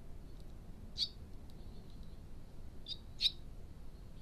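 Barn swallow nestlings giving short, high chirps: one about a second in, then two close together near the end, the last the loudest.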